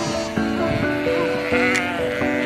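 Soft instrumental music with held notes, with sheep bleating over it; one bleat stands out about one and a half seconds in.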